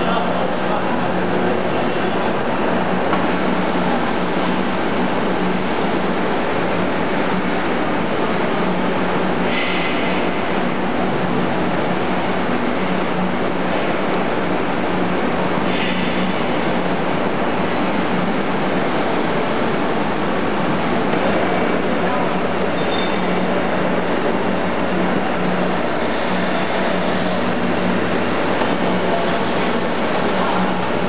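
Steady, loud din of processing machinery in a sheepskin and wool plant, from tanning drums and roller machines running together, with a constant low hum under it. Two short hissing bursts break through, about ten seconds and sixteen seconds in.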